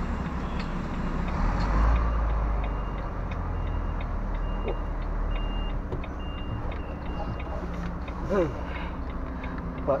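Volvo FMX truck's diesel engine running low and steady while it reverses, with its reversing alarm giving short beeps at one pitch, about one every 0.6 seconds, for several seconds in the middle.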